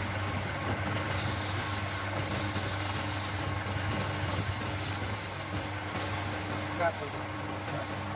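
Wood lathe running with a steady motor hum, and a rasping hiss around the middle as a file is held against the spinning wood.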